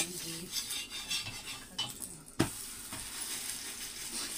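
Metal spatula and slotted ladle scraping and tapping on an iron griddle as a flatbread cooks over a wood fire, against a steady hiss. A few light clinks, with one sharp clack about two and a half seconds in.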